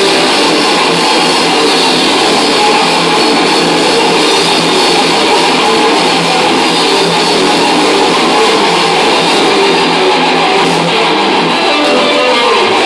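A thrash metal band playing live: distorted electric guitars and a drum kit at a constant loud level, thin with little bass.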